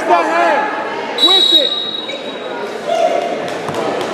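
Shouting voices echoing in a large gym during a wrestling match, with scattered thuds. A brief high steady tone sounds about a second in.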